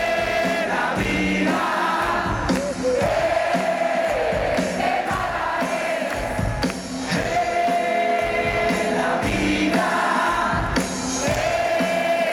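Live rock band playing, with a large crowd singing the melody along in repeating phrases of a few seconds each.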